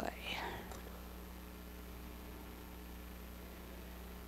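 A quiet pause picked up by a lecture microphone: a faint whispered breath in the first second, then only a steady low electrical hum.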